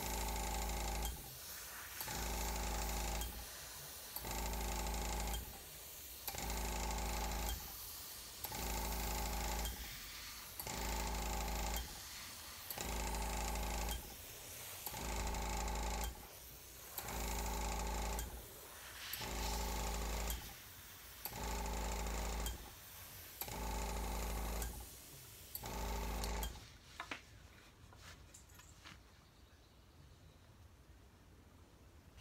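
Airbrush spraying paint in short bursts, each about a second long and about two seconds apart, with a small air compressor humming along with each burst. The bursts stop about 26 seconds in.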